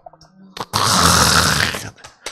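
A man's voice close to a microphone making one loud, raspy, breathy sound lasting about a second, starting about two-thirds of a second in.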